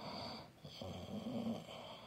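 A person breathing in and out loudly close to the microphone, ragged breaths about every second and a half, with a short voiced groan in the middle of the longer breath.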